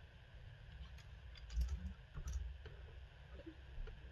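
Clothes hangers clicking against a metal closet rail as a dress is hung among other garments, with a few dull low thumps about halfway through.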